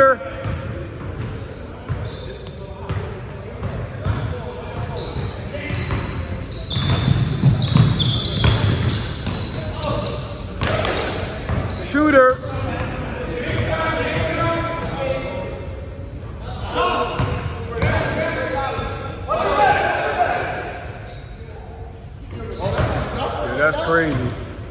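Basketball bouncing on a hardwood gym floor during play, with players' voices calling out now and then, all echoing in a large hall.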